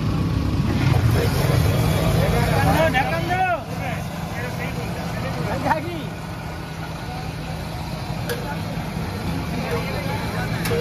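Street ambience: a steady low rumble of road traffic and engines, with voices talking over it, easing a little after the first few seconds.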